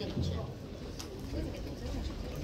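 Low, indistinct voices, with a single sharp knock about a second in.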